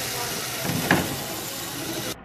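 A small robot's electric drive and intake-roller motors running with a steady hiss as it drives onto a plastic milk crate and pulls it in, with one sharp knock a little under a second in as the crate is caught.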